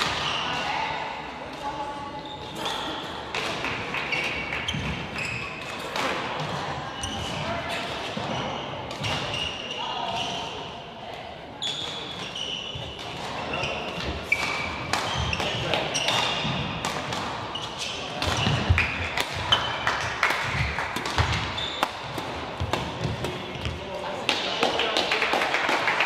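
Badminton play in a sports hall: sharp racket strikes on the shuttlecock and players' footfalls and shoe squeaks on the court, over a background chatter of voices.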